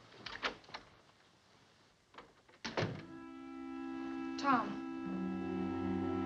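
A few light clicks and footsteps, then a door shutting with a thunk a little under three seconds in. Right after, background film music enters with held chords and a short falling glide about halfway through.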